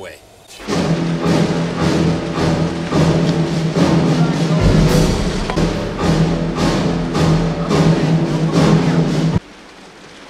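Orchestral film score with timpani, a driving beat of about two strikes a second over a sustained low note. A deeper bass layer joins about halfway, and the music cuts off suddenly near the end.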